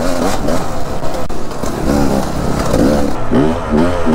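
Dirt bike engine revving up and down again and again while it is ridden over rough ground, with wind noise and rattling from the bike.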